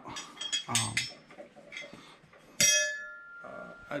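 A single sharp clink of a small hard object, ringing on briefly with several high tones that fade over about a second.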